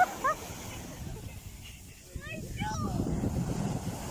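Indistinct distant voices, with a few short calls near the start and again about halfway, over a low rumble of wind and surf that grows louder in the second half.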